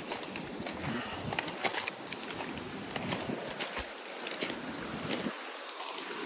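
Footsteps crunching and rustling through a thick layer of storm-stripped leaves and broken twigs: an irregular run of sharp crackles and snaps.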